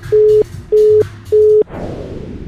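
Telephone busy tone heard in the handset: three short, even beeps of one steady pitch, the sign that the other end has hung up on the call. Near the end a rushing whoosh comes in.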